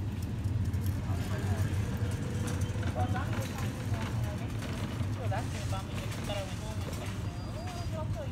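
Steady low hum of outdoor urban background, with faint, distant talking over it.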